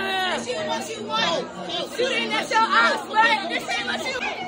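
Several people talking over one another in a crowded room: party chatter, with voices close by.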